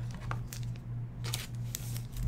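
A trading card being handled with plastic card holders from a toploader box: a few short rustles and scrapes, over a steady low electrical hum.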